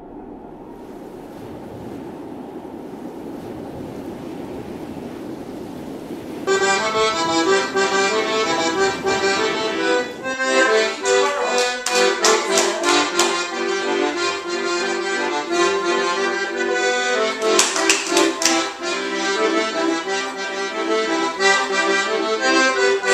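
Surf of breaking ocean waves, swelling slowly, then instrumental music starts abruptly about six seconds in and carries on with a steady beat.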